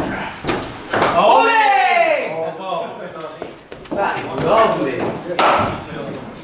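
Men talking, with a long falling vocal exclamation about a second in. Near the end comes a single sharp crack of a cricket bat hitting a hard cricket ball, in an indoor net hall.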